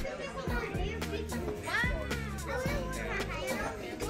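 Music playing under the chatter of diners, with a child's high voice rising and falling near the middle.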